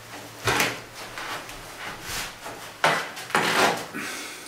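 Footsteps and clothing scuffs with a few light knocks, a man stepping back from the camera across the room; the loudest knock comes about three seconds in.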